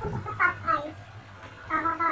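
A cat meowing twice, the calls a little over a second apart.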